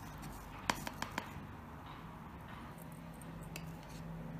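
Quiet room tone with a few light clicks about a second in, from kitchen things being handled; a faint steady hum comes in around the middle.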